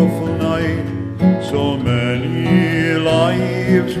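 Folk song: strummed acoustic guitars and banjo under long sung notes held with vibrato.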